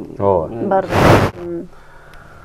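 A man speaking in short phrases, broken about a second in by a loud breathy hiss of about half a second, like a sharp intake of breath close to the microphone.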